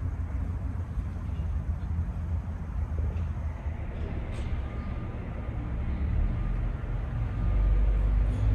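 Steady low background rumble that grows louder near the end, with a faint click a little over four seconds in.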